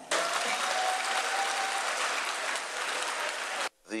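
Audience applauding, loud and steady, cut off abruptly near the end.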